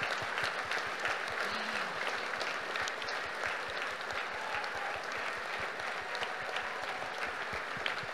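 Large audience applauding steadily, sustained clapping with a brief faint voice from the crowd.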